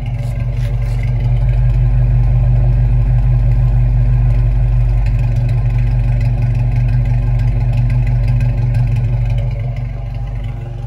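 1980 Toyota pickup's engine idling steadily, heard at the exhaust tip.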